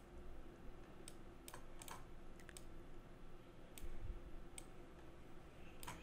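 A handful of faint, irregular computer mouse clicks, with a soft low bump about four seconds in, over quiet room hum.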